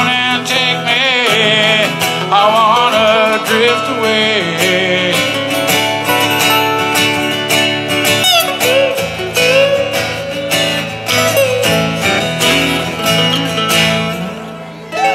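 Two acoustic guitars playing a soft rock song together, strummed and picked. A wavering, wordless vocal line sounds over the first few seconds.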